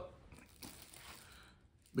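Faint crinkling of a thin clear plastic wrap being handled, dying away about a second and a half in.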